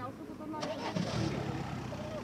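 A car engine running with a low, steady sound that comes up about a second in, under indistinct talk from people standing nearby.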